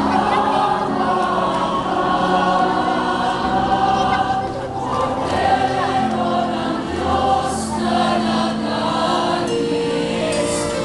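Choir singing a hymn with instrumental accompaniment, in long held notes over a steady bass.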